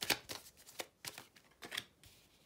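A deck of tarot cards being shuffled by hand: a run of quick, irregular card flicks and slaps.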